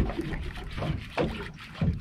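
Sea water slapping against the hull of a small boat: a few irregular low thuds over a steady wash of water noise.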